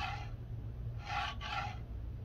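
A 3D-printed plastic part slid by hand across a textured plate into a sensor bracket, scraping briefly at the start and again about a second in. A low steady hum runs underneath.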